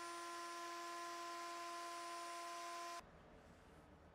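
Triton router spinning at speed with a small round-over bit on the edge of a Tasmanian blackwood slab: a steady whine over hiss. It cuts off abruptly about three seconds in, leaving faint room tone.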